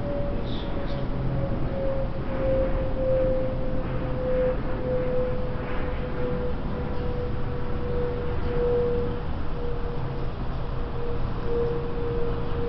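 A steady humming tone that slowly sinks a little in pitch, over a constant low rumble.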